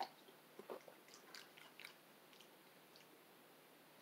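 Faint mouth sounds of drinking and tasting milk: a soft click at the start, then a handful of short swallows and lip smacks over the next two seconds, thinning out after that.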